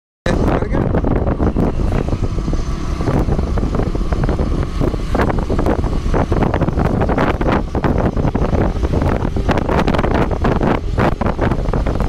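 Rumble of a moving road vehicle with wind buffeting the microphone in gusts.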